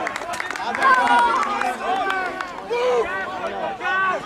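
Footballers' voices shouting and calling to each other during play, several overlapping, with a few short sharp clicks among them.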